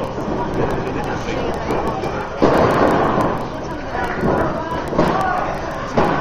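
Wrestlers' bodies thudding onto the ring canvas over crowd chatter and voices. The loudest impact comes about two and a half seconds in, with shorter ones near five and six seconds.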